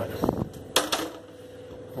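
Silicone spatula working a foil-lined baking tray of roasted almonds: a short scrape first, then one sharp knock just under a second in, then faint rustling.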